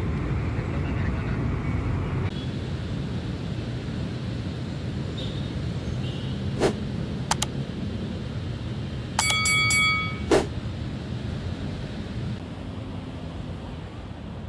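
Steady rumble of road traffic from cars, trucks and motorcycles on a busy multi-lane road. A few sharp clicks cut through it, and a short, high, pulsing tone sounds about nine seconds in.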